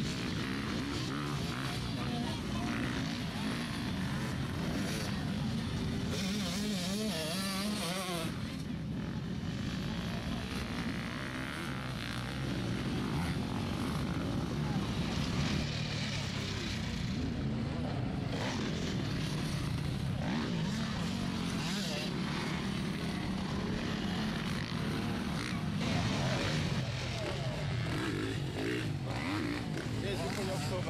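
Off-road dirt bike engines running and revving, the pitch wavering up and down, with voices mixed in.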